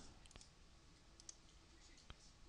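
A few faint computer mouse clicks, about three, spread over near silence as a paste is done through the editor's menus.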